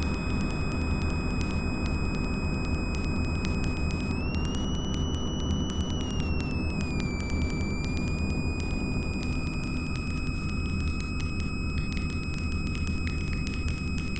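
Experimental electronic drone from an EMS Synthi VCS3 analog synthesizer and computer: a steady low rumbling noise bed under a high whistling tone that slides up about four seconds in and back down around seven seconds. A very thin, very high tone comes in about nine seconds in and steps down a little a second later.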